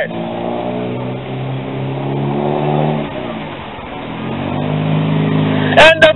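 A motor vehicle's engine running close by, building in level, easing off in pitch and loudness a little past halfway, then picking up again.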